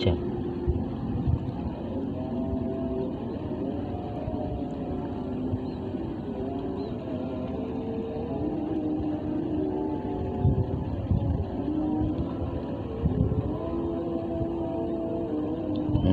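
A steady engine drone, its pitch shifting up and down every few seconds.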